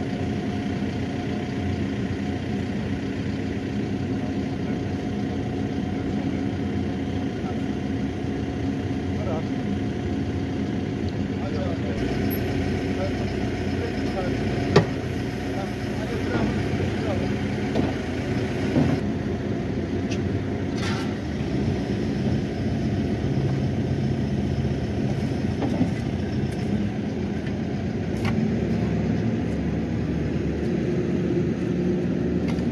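An excavator's engine idling steadily while it holds the tree in its bucket, with a sharp knock about fifteen seconds in.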